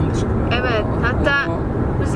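Steady road and engine rumble inside a moving car's cabin, with a few short spoken syllables about half a second and a second in.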